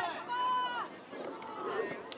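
Men shouting during outdoor soccer play: one long held call in the first second, then fainter shouts.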